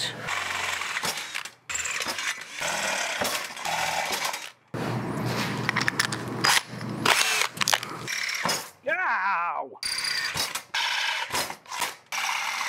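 Cordless drill boring through a metal grill support, enlarging eighth-inch pilot holes with a 5/16-inch bit. It runs in several bursts with short breaks between them.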